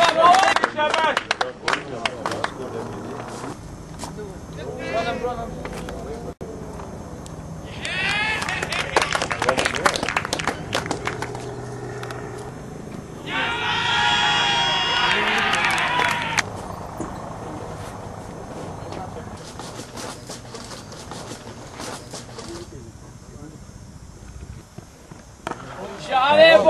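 Distant voices calling out in short stretches, strongest in a held call about halfway through, with scattered sharp clicks and knocks.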